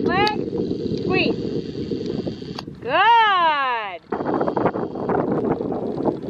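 Wind buffeting the microphone, with a loud, drawn-out call of about a second, about three seconds in, that rises and then falls in pitch.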